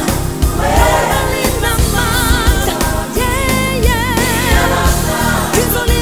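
Gospel song: a choir and lead singer, the lead voice wavering with a strong vibrato in the middle, over a drum kit and bass guitar keeping a steady beat.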